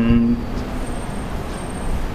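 A man's last chanted note is held and stops about a third of a second in. A steady hiss with a low hum follows, with no words over it.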